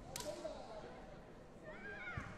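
A sharp smack near the start, typical of a kick landing on a taekwondo body protector, with a short ringing tail. Short high-pitched kihap shouts from the fighters follow, one rising and falling near the end.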